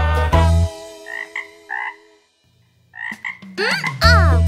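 Cartoon frog croak sound effects as the music stops: three short croaks, a brief silence, then two more.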